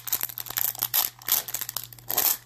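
Plastic wrapper of a 2019 Topps Series 1 baseball card pack crinkling in the hands as it is opened, a quick run of crackles.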